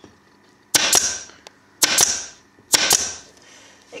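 Pneumatic upholstery staple gun firing three times, about a second apart, each a sharp crack that trails off over about half a second, as staples are driven through a plastic back tack strip.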